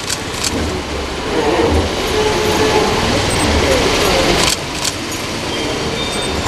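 A car running close by, its low rumble under a steady wash of noise, with indistinct voices behind it and a few sharp clicks.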